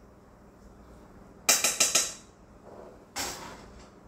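Metal cookware and utensils clattering as a pot roast is taken out: a quick run of several sharp metallic clinks with a brief ring about a second and a half in, then a single clank about three seconds in.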